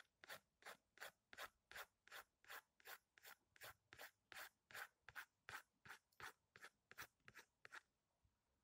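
Graphite pencil scratching on paper in short, even strokes, about three a second, soft and regular like hatching or shading.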